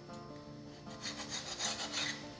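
A kitchen knife cutting through soft bread dough and scraping on the floured work surface, as a quick run of short scraping strokes in the second half, under soft background music.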